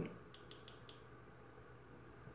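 A few faint, quick clicks within the first second: the mode button on a Zhiyun Crane gimbal's handle being pressed to switch into pan and tilt follow mode. Otherwise very quiet.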